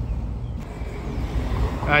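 Steady low engine rumble from a car idling or passing close by, with street traffic noise.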